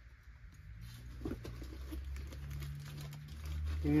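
Faint rustling and light clicks of small items being handled and shifted inside a canvas range bag, growing busier after about a second, with a low steady hum underneath from about halfway through.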